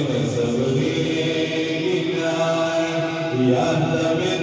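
A man's voice chanting devotional verses through a microphone and loudspeakers, in drawn-out sung notes.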